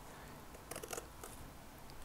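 Small scissors cutting through a strip of paper, a few faint snips near the middle.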